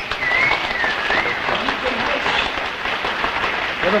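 Studio audience applauding steadily, with a high wavering tone in roughly the first second.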